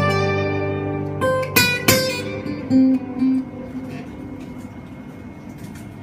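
Two acoustic guitars playing live: a held chord rings and fades, three sharp strums come about a second in, a couple of single notes follow, and from the middle on the guitars drop to a quiet ringing.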